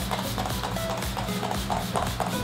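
MAC Fix+ face mist being spritzed from its pump spray bottle onto the face, short hisses of spray. Soft background music and a fan's steady hum run underneath.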